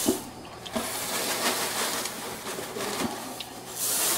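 Dry Rice Krispies cereal pouring from a glass measuring cup into a pan, making a steady dry rustle that grows louder with a fresh pour near the end.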